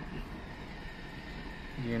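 Steady low hum inside a car's cabin, with a man's voice starting again near the end.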